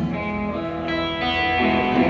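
Live rock band playing: electric guitars ringing out over bass in a short stretch without vocals between sung lines.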